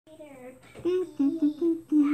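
A person humming a short tune: a run of brief held notes stepping up and down in pitch.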